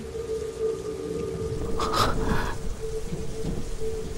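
Rain falling steadily with low thunder rumbling under it, beneath a steady held tone. A short louder burst comes about two seconds in.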